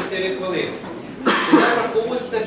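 Indistinct talking among a seated audience, with one loud cough a little after halfway.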